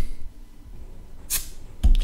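Crown cap being prised off a glass beer bottle with a bottle opener: a short hiss of escaping gas about one and a half seconds in, then a low knock near the end.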